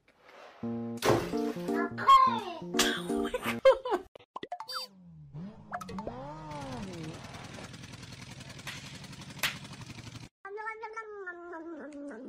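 Comedy sound effects and music: a short jingle of stepped notes, then cartoon boing glides that rise and fall, over a steady buzzing tone that cuts off suddenly. Near the end a drawn-out pitched sound slides down.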